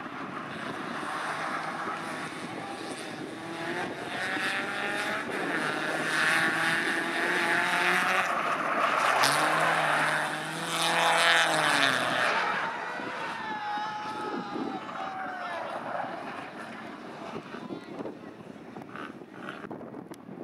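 BMW cup race cars' engines revving hard and changing gear as the cars drive past, the pitch climbing and dropping. Loudest around the middle, then fading.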